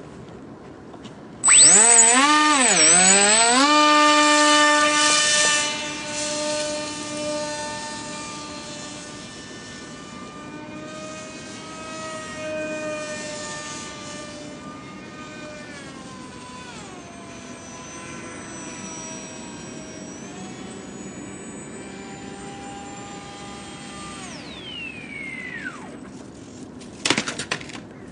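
Motor and propeller of a radio-controlled Depron flying-wing model plane: a loud whine starts about a second and a half in, wobbling and rising in pitch as it is throttled up. It then runs on quieter, shifting up and down in pitch with the throttle and fading with distance, and near the end the pitch falls steeply as the motor is throttled back.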